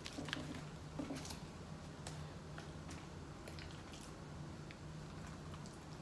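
Soft squishing and rustling of masa and corn husks being handled at the table, with a few faint utensil clicks, over a steady low hum.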